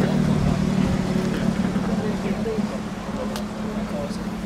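A car engine idling with a steady low hum, with faint voices in the background.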